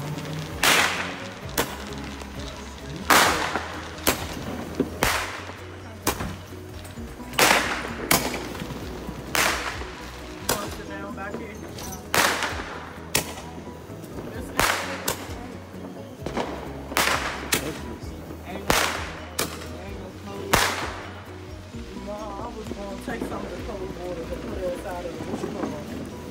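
Consumer fireworks going off: a series of about twenty loud bangs, many in pairs about a second apart, each with a short echoing tail, ending about 21 seconds in.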